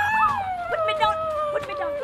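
A person's voice holding one long note that slowly falls in pitch.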